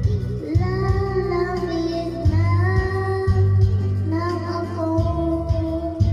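A young boy singing into a handheld microphone over backing music, his voice amplified through loudspeakers, holding long notes.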